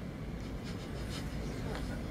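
Pause in speech: conference-room tone with a steady low hum and faint rustling.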